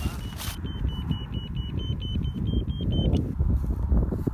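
Electronic ferret locator beeping in short, even pips, about five a second, the pitch edging up slightly before it stops about three seconds in: the receiver picking up a collared ferret underground. A low rumble of wind and handling on the microphone runs under it.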